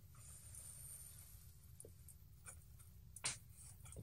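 Near silence: quiet room tone with a few faint, short clicks, one a little louder about three seconds in.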